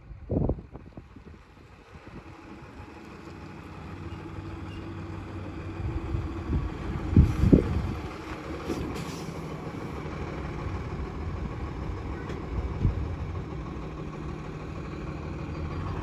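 Diesel truck engine running steadily at low speed while a tractor-trailer maneuvers slowly, growing louder over the first several seconds. There are a few loud thumps: one just after the start, two close together about halfway through and a smaller one later.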